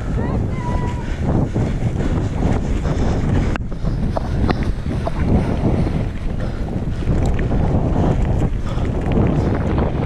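Wind buffeting the microphone while a mountain bike rolls along a dirt and gravel trail: a steady low rumble with the crunch of tyres and scattered clicks and rattles from the bike. The sound breaks off abruptly about three and a half seconds in and carries on the same way.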